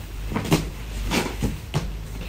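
Folded checked fabric being handled on a wooden table: cloth rustling with three brief soft knocks as it is smoothed and set down.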